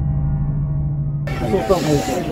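A low steady hum. About a second and a quarter in, it gives way to several men's voices talking and shouting over one another in a team huddle.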